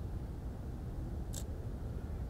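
Quiet outdoor background with a steady low rumble, and a single short, high click a little past halfway.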